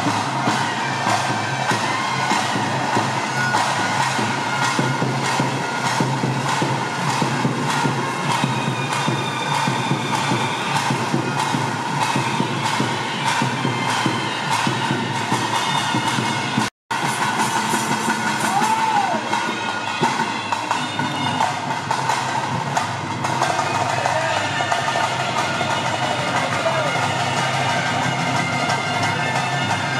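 Bhuta Kola ritual music: a double-reed pipe playing sustained lines over fast, steady drumming. The sound drops out for a split second a little past the middle, then carries on.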